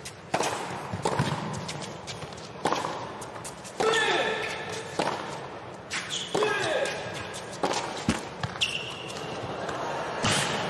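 Tennis rally on an indoor hard court: a serve, then racket strikes on the ball about once a second. Short, loud vocal grunts from the players come with several of the shots.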